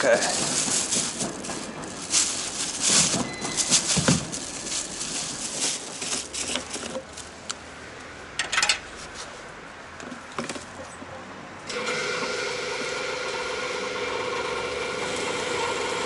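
Plastic bag rustling and clicks of handling at the fuel dispenser, then a few seconds from the end a petrol pump starts with a sudden steady hum as fuel is dispensed through the nozzle into the canister.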